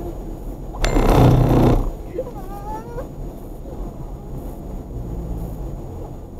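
Low, steady road and engine hum inside a moving car's cabin. About a second in, a person makes a loud, rough, breathy noise lasting about a second, followed by a short wavering vocal sound.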